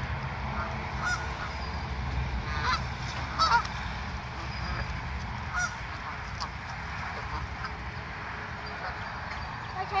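Canada geese honking: scattered short calls from the flock, the loudest about three and a half seconds in, fewer later, over a steady low rumble.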